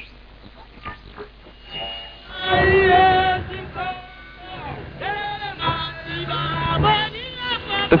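Medium-wave broadcast reception through a simple transistor Audion (regenerative receiver): faint noise and crackle at first, then a station playing music with singing comes in about two and a half seconds in.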